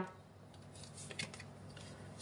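Faint handling of tarot cards: the deck rustling in the hand and light ticks as cards are drawn and laid on a cloth mat.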